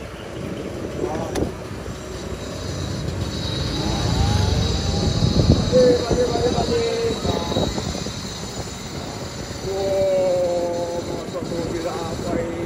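Wind and road rumble on a moving electric-converted Vespa scooter, with no petrol engine note, growing louder around the middle.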